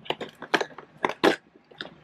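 Perforated cardboard door of a LEGO advent calendar being pressed in and torn open by a finger: a run of sharp cardboard crackles and pops, the loudest just past a second in.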